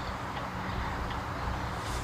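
Steady low rumble of outdoor background noise, such as a street or a vehicle running, with no distinct events.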